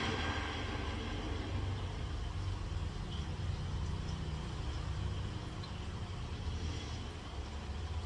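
A steady low rumble with a faint hiss over it, with no music or voice in it.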